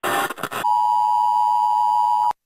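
A short burst of TV static hiss, then a steady two-tone emergency-alert attention signal just under 1 kHz.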